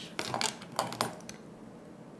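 Several sharp, light clicks and clatters packed into about the first second, from plastic lash-applicator tweezers and cosmetic packaging being handled.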